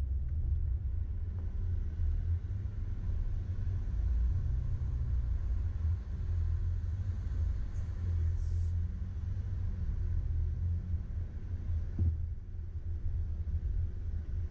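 Steady low rumble of a four-wheel-drive vehicle crawling up a rough, rocky dirt trail, with one sharp knock near the end.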